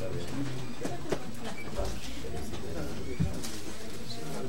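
Low, indistinct conversation between people at a table, with two small knocks, one about a second in and one about three seconds in.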